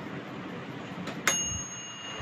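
Sokany 8.5-litre air fryer's mechanical timer bell dinging once, with a click and a short clear ring that fades, after quiet handling of the dial knobs.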